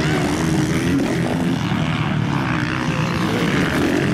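450cc four-stroke motocross bikes running hard on the track, their engines revving up and down in overlapping tones.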